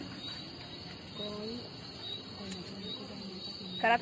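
Crickets chirping steadily in a high-pitched, unbroken trill, with faint voices murmuring underneath.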